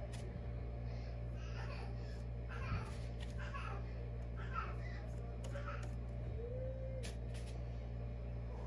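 A steady low hum, with faint, indistinct voice sounds in the background through the middle of the stretch. A couple of faint clicks are also heard, near the start and towards the end.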